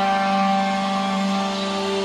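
Distorted electric guitar holding one long, steady note that rings on without fading, sustained by amplifier feedback while the picking hand is off the strings.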